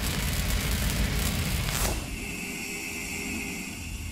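Logo-intro sound effect: the low rumbling tail of a boom, a brief swoosh near the two-second mark, then a steadier low hum with a thin high tone that slowly fades out.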